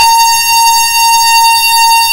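A loud, steady buzzing tone held at one pitch with bright overtones, cut in abruptly in place of distorted guitar noise, in a harsh noise music piece.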